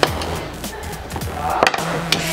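Screwdrivers with plastic handles and steel shafts sliding over a wooden workbench as they are pushed into a row, with a few light clacks as they knock together, the sharpest near the end. Background music plays underneath.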